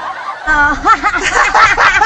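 People laughing hard, the laughter turning loud about half a second in and running on in quick, wavering bursts.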